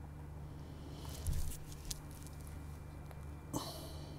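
Quiet room tone with a steady low hum, a brief rustle about a second in, and a few faint clicks.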